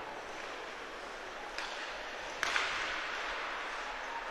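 Ice hockey rink ambience during play: a steady hiss of noise from the ice and the crowd, which grows louder about two and a half seconds in.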